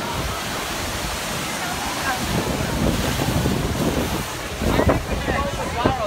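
Steady rushing noise of wind buffeting the phone's microphone, mixed with water running through a log flume's trough, with scattered crowd voices in the second half.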